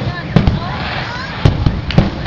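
Aerial firework shells bursting: a sharp bang at the start, another just under half a second in, two more close together about a second and a half in, and one at the end, each with a low boom.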